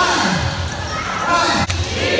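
Thumps of many players' shoes on a hardwood basketball court during a group warm-up drill, under a large gym's mix of voices and shouts. One sharp knock comes near the end.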